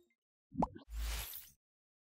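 End-screen animation sound effects: a short rising pop about half a second in, followed at once by a whoosh lasting about half a second.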